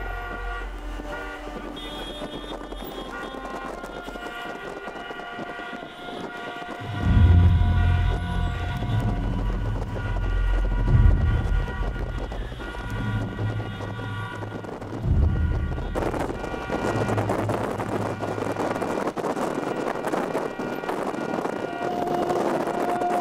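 Many car horns honking at once in a convoy, long overlapping blasts at different pitches, with heavy low rumbles of wind buffeting the microphone about 7, 11 and 15 seconds in. From about 16 seconds in, the horns give way to a loud hiss of wind and road noise.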